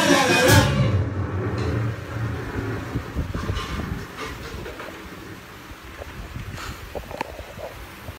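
A live rock band with electric bass, drum kit and voice finishes a song: the singing and most of the band cut off about a second in, a low bass note rings on briefly and fades. Then only a quiet room hum remains, with a few light knocks.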